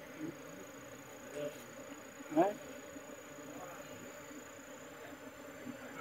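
Honeybees buzzing around an open hive box: a faint, steady hum.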